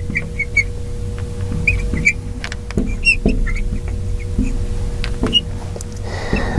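Felt-tip marker squeaking on a glass lightboard in short strokes as words are written, over a steady low hum.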